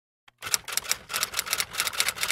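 A flat bristle paintbrush scrubbing orange textile/acrylic paint onto a canvas tote bag: quick scratchy strokes, about six a second, starting half a second in.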